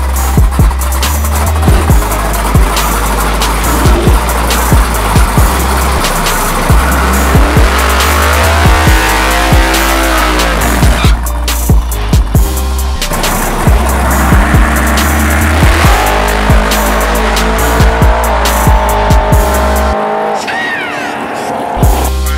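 Hip-hop music with a heavy, steady beat laid over a Fox-body Ford Mustang drag car doing a burnout: the V8 revving up and down with tyres squealing.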